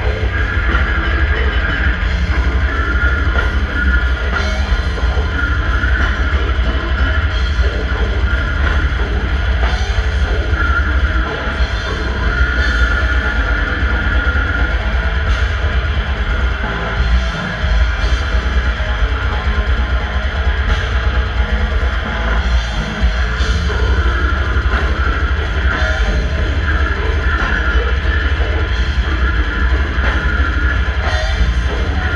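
A death metal band playing live and loud: distorted down-tuned electric guitars over a drum kit with fast drumming and cymbals, recorded from within the crowd.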